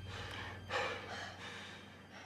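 A person's breaths and a gasp: three short breaths, the loudest about three-quarters of a second in. Under them a low steady tone fades away.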